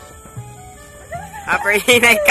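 Low background for the first second and a half, then loud, excited shouting voices.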